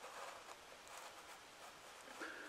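Near silence: room tone with faint rustling as a cardboard box is handled.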